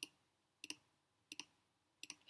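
Four sharp computer mouse clicks, each a quick press-and-release, coming about two-thirds of a second apart as options are picked from drop-down menus.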